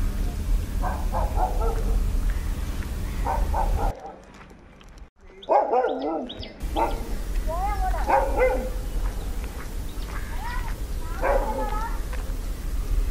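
A dog barking and yipping in short bursts, about half a dozen times.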